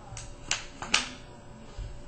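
A few short, sharp clicks and taps of metal parts as the bolt assembly is fitted back into the aluminium body of a Smart Parts NXT Shocker paintball marker. The loudest comes just before one second in.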